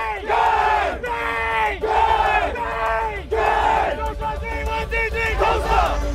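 A team huddle chant: a group of men shouting together in unison, a string of loud rhythmic shouts about a second apart, the later ones shorter and quicker.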